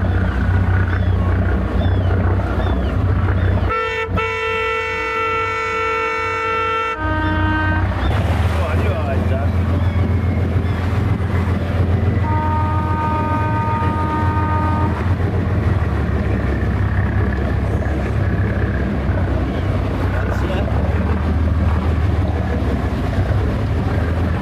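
Lifeboat horns sounding over a steady low rumble: a long blast starting about four seconds in and lasting about three seconds, a short one just after, and a second, quieter blast about twelve seconds in lasting a couple of seconds.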